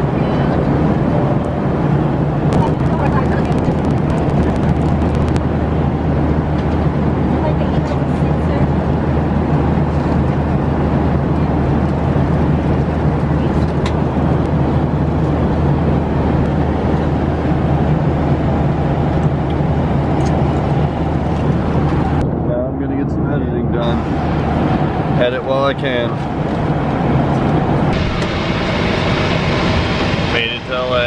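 Airliner cabin noise in flight: a loud, steady low roar of engines and airflow. About 22 seconds in the sound changes, and voices come in near the end.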